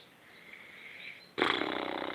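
A man's low, drawn-out vocal sound, a wordless thinking noise, starting about a second and a half in after a faint stretch of room noise.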